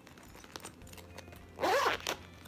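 Zipper of a clear plastic vinyl pouch pulled open in one quick zip near the end, a short buzzing rasp that rises and falls in pitch.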